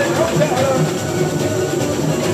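A samba school drum section playing a samba: surdo bass drums, snare drums and other hand percussion in a dense, steady rhythm, with voices singing over it.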